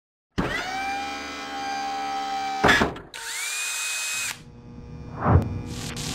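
Intro sound effects: a machine-like whine that rises and levels off, like a power tool spinning up, then cuts off in a sharp hit. A second rising whine follows, and then a low thump.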